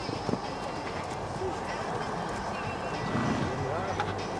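Indistinct talking of spectators with the dull hoofbeats of a horse cantering on a sand arena.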